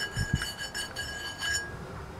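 Two soft low bumps near the start, over quiet background noise with a faint steady high whine that fades out near the end.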